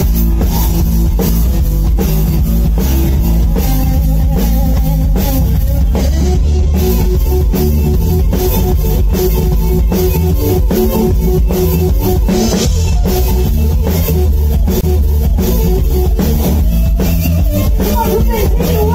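Live band playing: a drum kit keeping a steady beat with cymbals, electric bass underneath, and electric guitar playing held notes over it.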